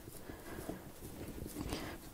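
Hands patting and pressing wet, sticky sourdough dough against a floured countertop: faint, soft, irregular taps.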